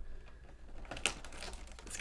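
Light clicks and scrapes of cardboard as fingers work a trading-card pack out of a tight slot in a cardboard advent calendar, with one sharper click about a second in.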